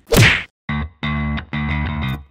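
A loud falling swoosh transition effect, then a short gap, then an intro jingle of guitar and bass chords played in short stabs about two a second.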